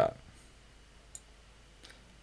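Two faint, short clicks, one about a second in and a softer one near the end, over low room tone: the pointing device used to draw the shading on the screen.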